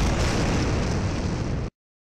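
An edited-in dramatic boom sound effect: a loud, dense rumbling noise with heavy bass, held steady. It cuts off suddenly near the end into dead silence.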